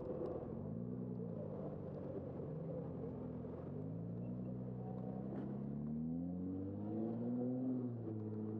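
A nearby motor vehicle's engine accelerating, its pitch climbing, dropping back about four seconds in and climbing again, in steps typical of gear changes, over a steady low road rumble.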